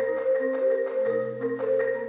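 Marimbas played with mallets in a fast, driving pattern of quickly repeated notes in several parts over sustained low notes, the bass note changing about a second in.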